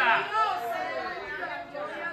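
Speech only: quieter talking whose words are not made out.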